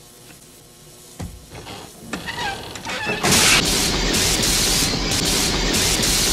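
Electrocution sound effect: after a low thump and a rising warm-up, loud electric buzzing and crackling sets in about three seconds in and keeps going.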